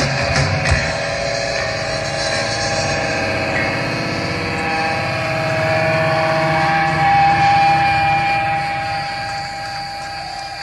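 A live rock band finishing a song: the drums stop about a second in, and the electric guitar and its amplifier ring on in long held tones with a hiss of noise, slowly fading.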